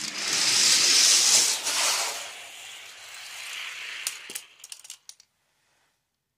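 Two die-cast Hot Wheels cars released from the starting gate and rolling fast down a plastic track: a loud rattling rush that fades after about two seconds. A few sharp clicks follow about four to five seconds in.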